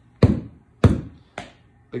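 Three sharp knocks on a wooden shipping crate, a little over half a second apart, the middle one loudest.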